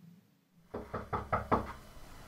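Knuckles knocking on a door, five quick raps in a row about a second in.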